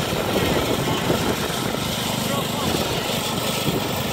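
John Deere garden tractor's engine running under load, driving its front-mounted snowblower attachment as it throws snow; rough and uneven at first, settling into a steady engine hum about two seconds in.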